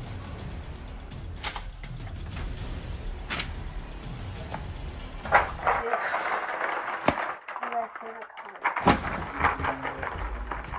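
Quiet background music, then from about five seconds in the paper pages of a spiral-bound journal being flipped by hand, rustling with sharp snaps as each page turns.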